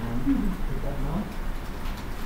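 A person's voice making a couple of short, indistinct sounds with gliding pitch in a room, over a steady low hum.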